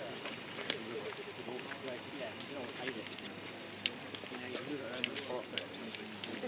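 Indistinct background voices of several people talking, with scattered sharp clicks and footsteps of people walking on paving.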